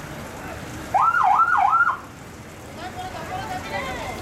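Electronic warbling siren-type horn sounding once for about a second, its pitch sweeping up and down three times.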